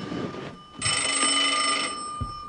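Telephone bell ringing: one ring of about a second, starting near the middle.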